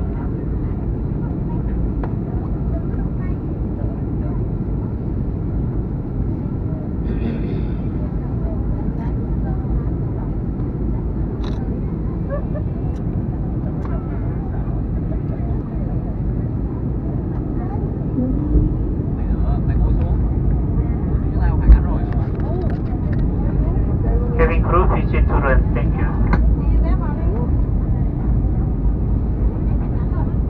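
Steady low rumble of a jet airliner's cabin in flight, heard from a window seat during the descent, growing a little louder past the middle. A single sharp knock comes about two-thirds through.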